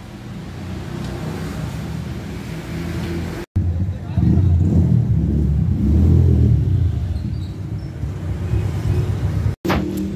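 Street noise made mostly of a low motor-vehicle rumble. It jumps louder about three and a half seconds in, swells and eases, and voices are mixed in.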